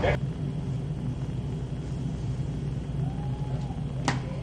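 Handheld hair dryer running steadily, a low motor hum under a soft rush of air.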